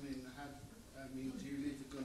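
Speech only: a man talking quietly, the words not made out.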